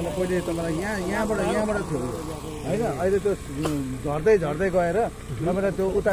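A man talking, with a single sharp click about halfway through.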